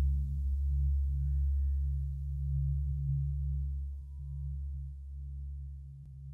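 Closing bars of an electronic dance track: the beat has stopped and a deep, sustained bass drone slowly fades out, with a faint high tone briefly early on.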